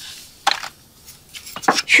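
Mussel shells and small knives clicking as mussels are opened for stuffing over a metal tray: one sharp click about half a second in, then a few softer clicks near the end.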